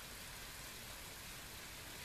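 Faint steady hiss of room tone and recording noise, with no distinct sound events.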